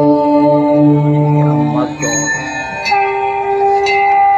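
Devotional aarti music: a long held chanted note that bends and fades about two seconds in, then a sustained instrumental note begins about a second later.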